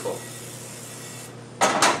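A frying pan set down on a gas stove's burner grate, with two sharp metal clanks near the end, over a steady faint hiss.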